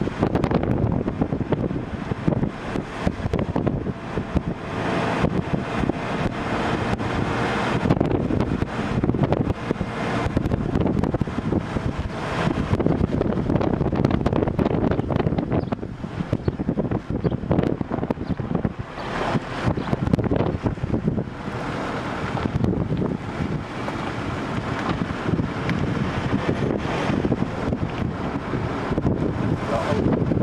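Wind buffeting the microphone over the steady noise of a vehicle on the move. The noise is loud and gusty, rising and falling throughout.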